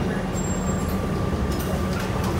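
Cabin sound of a New Flyer DE40LF diesel-electric hybrid bus under way: a steady low rumble from the drivetrain and road, with a faint steady whine above it.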